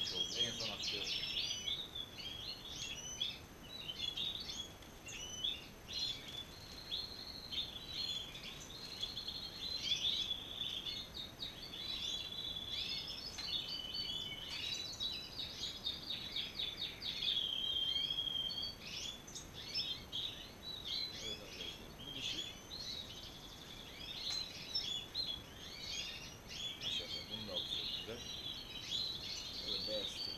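Many caged European goldfinches singing at once: a dense, continuous twittering of quick chirps and trills, with a few longer held notes about halfway through.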